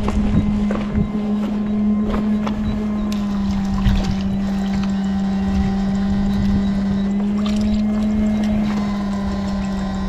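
Electrofishing rig's inverter running with a steady electrical hum, one low tone held without a break, as current is sent into the water through the poles.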